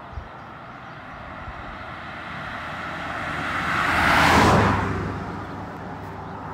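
A vehicle passing at speed on a two-lane road: tyre and engine noise builds over about two seconds, is loudest a little past four seconds in, then fades away.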